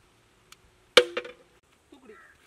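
Two quick metallic clanks about a fifth of a second apart, the first the louder, each ringing briefly with a clear tone as it dies away: metal cookware, a large cooking pot and iron ladle, being knocked.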